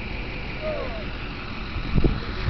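Pickup truck engine running at a low, steady idle.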